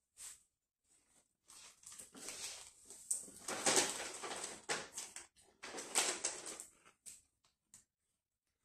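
A person tasting beer from a glass: a sip, then breathy mouth and nose sounds of breathing out, loudest about four and six seconds in.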